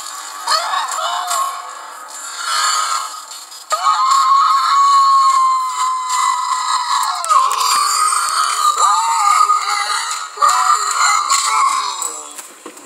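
Cartoon soundtrack playing from a television, thin and without bass: voices and music, with a long held, slowly falling yell from about four to seven seconds in.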